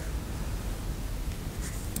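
Quiet room tone: a steady low hum and hiss, with a faint rustle as of paper handled.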